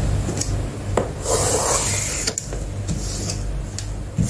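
Hands rubbing and sliding over a large cardboard box: a rough scraping of cardboard with a few sharp taps, the longest scrape about a second in.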